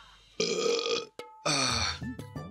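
A man burping loudly twice, each burp about half a second long.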